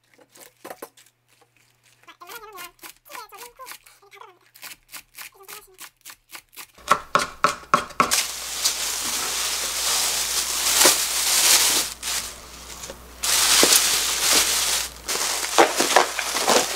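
A knife chopping green onions on a wooden cutting board, in quick, evenly spaced strokes. From about halfway through, a louder, continuous rustling and crinkling of plastic takes over as the chopped onion is gathered up to be bagged.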